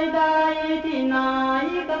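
A Thai luk krung song recording playing a melody of long held notes. The melody steps down in pitch about a second in, then slides back up near the end.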